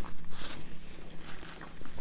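Close-miked chewing and wet mouth sounds of juicy fruit being eaten: irregular small clicks and smacks, with a short noisy burst about a third of a second in.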